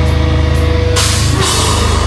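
Metalcore band playing live: heavy distorted guitars and a drum kit with a fast pulsing kick, and a cymbal crash coming in about halfway through.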